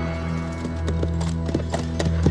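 Horse hooves clip-clopping in a run of uneven strikes that start about half a second in, over film score music with held low notes.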